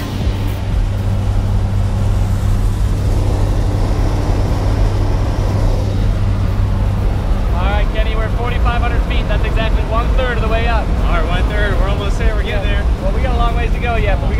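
Steady, loud drone of a skydiving jump plane's engines heard inside the cabin during the climb. From about halfway through, indistinct voices talk over it.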